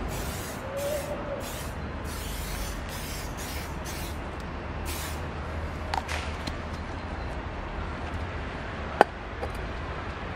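An aerosol can of Aromaks tire shine spraying onto a tire sidewall in about eight short hissing bursts over the first five seconds. A single sharp click near the end.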